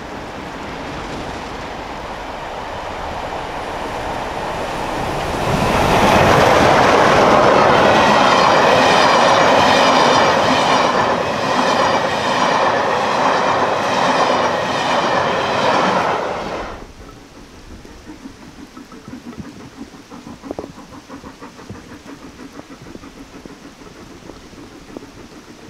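LMS Royal Scot class steam locomotive 46100 and its train approaching, growing louder, then passing close by. The coaches' wheels click in a quick even rhythm over the rail joints. The sound cuts off suddenly about 17 seconds in, leaving steady rain.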